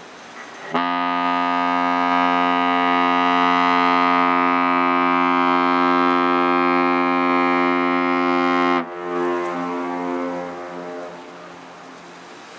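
A ship's horn sounds one long blast of about eight seconds: a steady, unwavering note rich in overtones that starts about a second in and cuts off sharply, then lingers as a fading echo for a couple of seconds.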